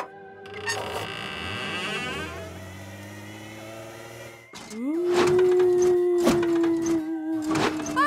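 Spooky cartoon soundtrack. Sustained eerie music plays under a door-opening effect as the shed doors part. About five seconds in, a long ghostly wail swoops up and holds its pitch, with a few sharp knocks over it.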